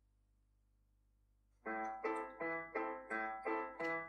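About a second and a half of near silence, then a piano-toned keyboard starts playing a run of short separate notes, about four a second, as a song's instrumental intro.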